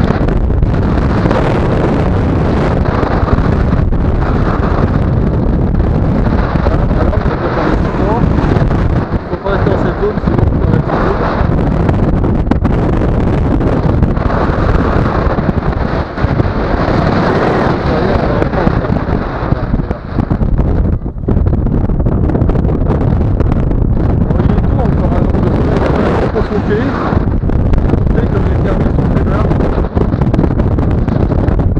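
Airflow buffeting the camera microphone of a tandem paraglider in flight: a loud, steady, fluttering rush, with a few brief dips.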